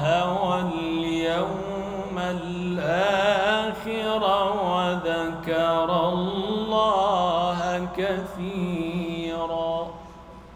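A man's melodic Quran recitation, drawing out long, ornamented held notes whose pitch winds up and down, amplified through a microphone. The voice stops near the end.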